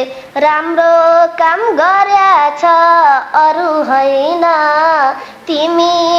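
A boy singing a line of a Nepali dohori folk song in a high, unbroken voice, holding long notes.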